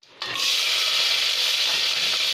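Chopped shallots and chillies sizzling steadily as they hit hot oil and mustard seeds in a pressure cooker; the hiss starts about a quarter second in.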